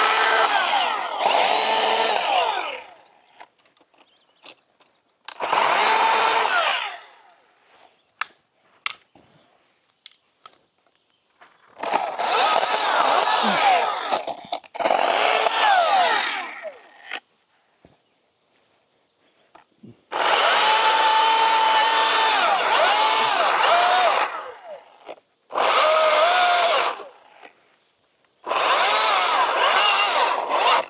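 Chainsaw cutting the top out of a balsam fir, running in about seven bursts of a few seconds each, its pitch wavering under load, with near silence between the bursts.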